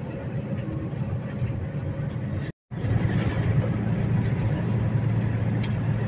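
Semi-truck driving at highway speed, heard from inside the cab: a steady low engine drone over road and tyre noise. The sound cuts out completely for a moment about two and a half seconds in, then returns a little louder.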